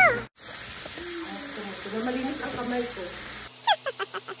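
Pork chorizo cooking in a frying pan with water, a soft steady bubbling sizzle under faint voices, with a few light clicks near the end.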